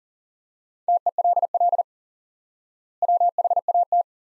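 Morse code sent at 40 words per minute as a steady-pitched beep keyed in rapid dots and dashes: two words in a row, about a second apart.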